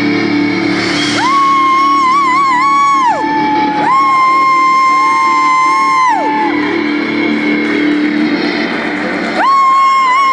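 Live rock band holding a sustained chord, with long high held notes sliding up into and falling off each one, one of them wavering; it sounds like the drawn-out ending of a song.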